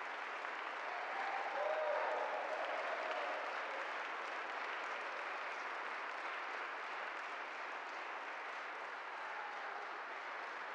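Audience applauding steadily, loudest about two seconds in, with a brief single voice call rising over the clapping early in the applause.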